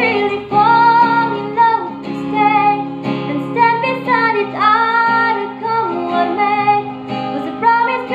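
A woman singing a melody while strumming chords on a capoed acoustic guitar.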